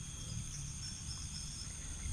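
Faint, steady, high-pitched insect chirring in the background.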